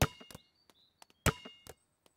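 Cartoon sound effect of a basketball being dribbled slowly: a few separate bounces with a short ring, two loud ones about a second and a quarter apart and a softer one just after the second.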